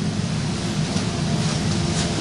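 A motor running steadily: a low, even hum under a constant hiss.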